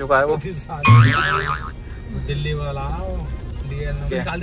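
A song with a singing voice playing on the car stereo inside the cabin, over a steady low hum. The loudest moment is a held, wavering sung note about a second in.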